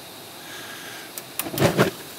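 Four-burner gas grill being lit: a faint hiss of gas, then a short run of sharp igniter clicks about a second and a half in as the burner catches.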